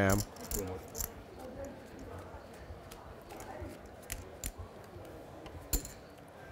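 Poker chips being handled at the table, giving scattered light clicks over a low room hush, with the sharpest click near the end.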